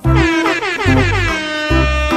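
Background music with a steady bass beat, over which a horn-like note slides down in pitch for about a second and a half.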